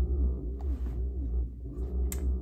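Kinnls Cellier massage chair's motors running in a massage mode: a steady low hum with a faint tone rising and falling about twice a second.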